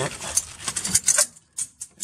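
A handful of short, sharp metallic clicks and clinks, a few tenths of a second apart, from small metal parts being handled in a diesel truck's engine bay.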